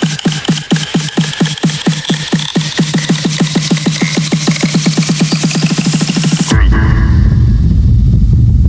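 Minimal techno in a DJ mix at a build-up: a drum roll speeding up over a rising sweep, with the bass cut out. About six and a half seconds in, the track drops and the heavy bass comes back in while the highs fall away.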